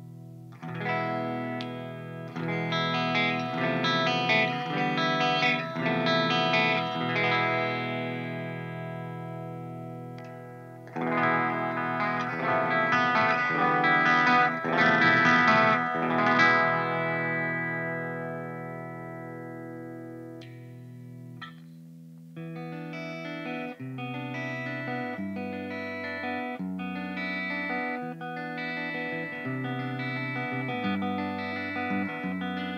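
Shamray Custom PRS copy electric guitar played through an amplifier. Struck chords ring out and slowly die away, twice. For the last third the guitar plays quicker lines of separate picked notes.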